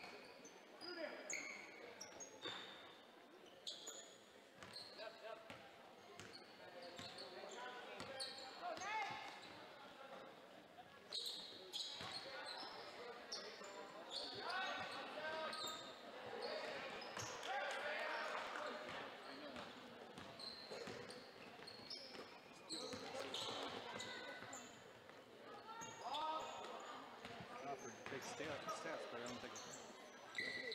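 Basketball game on a hardwood court: a ball being dribbled, many short high sneaker squeaks, and players and spectators calling out now and then.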